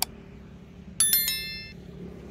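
A mouse click, then about a second in a bright bell chime of several quick strikes that rings out and fades within a second: the sound effect of a subscribe-and-notification-bell overlay.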